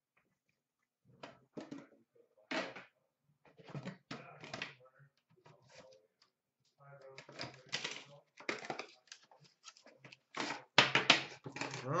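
Trading cards and cardboard card boxes being handled on a glass counter: an irregular run of sharp taps and clicks, starting about a second in and getting busier toward the end.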